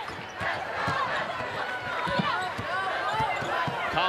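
Basketball sneakers squeaking on a hardwood court in many short chirps, with a basketball bouncing during live play.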